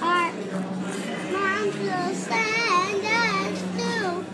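A young girl singing, her voice gliding and wavering up and down in pitch.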